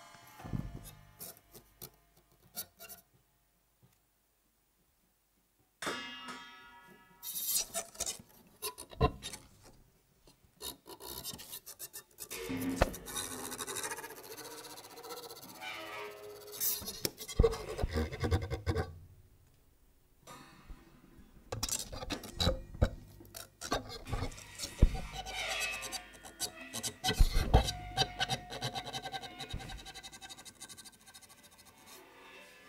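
Free-improvised percussion duo on cymbals, drum kit and a snare drum with live electronics. Sparse taps open the passage, then about two seconds of silence. From about six seconds in, a dense, uneven texture of sharp strikes and scraping noise builds, thins out around twenty seconds, and builds again with a held ringing tone near the end.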